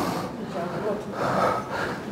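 A pause in a man's amplified lecture: the last syllable of his speech trails off at the start, leaving low, steady hall background noise with a faint soft sound between one and two seconds in.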